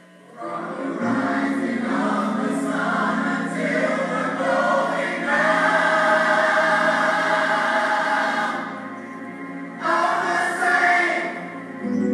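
Church choir singing a gospel song with keyboard backing. The voices come in about half a second in, hold a long phrase, dip briefly, then sing a shorter phrase near the end.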